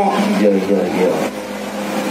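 A man's voice through a PA loudspeaker, a Javanese wedding master of ceremonies reciting in a drawn-out, chanting manner, dipping softer a little past the middle.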